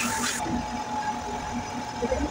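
Steady workshop background hum with a thin high tone and low rumble, opening with a brief burst of hiss.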